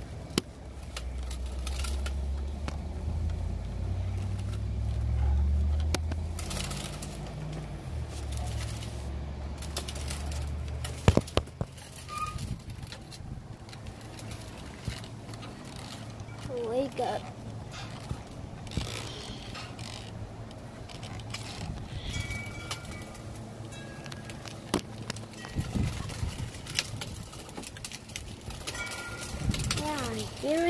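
A small wheel rolling over a concrete walkway. It gives a low rumble for about the first ten seconds, then scattered knocks and clicks from the ride and from the phone being handled.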